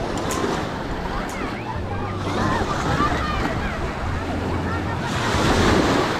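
Small waves washing up onto the sand at the water's edge, with a louder wash of surf near the end.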